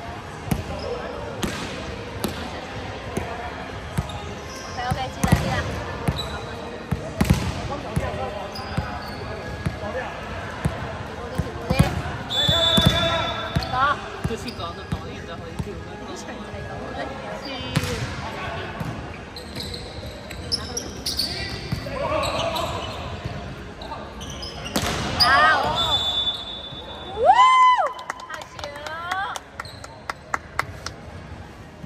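Volleyball being played on an indoor court: a run of sharp hits and bounces of the ball, short high squeaks of sneakers on the floor, and players calling out. The loudest moment is a shout near the end.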